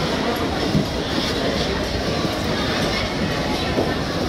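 Busy ice-rink noise: a steady rumbling scrape of skate blades and plastic skating aids sliding on the ice, with children's voices mixed in.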